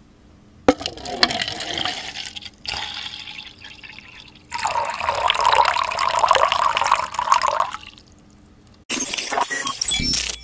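Water poured from a plastic water bottle into a plastic cup: two short pours, then a longer steady pour of about three seconds. A loud burst of noise starts near the end.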